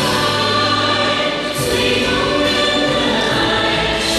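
A group of children singing a song together in chorus.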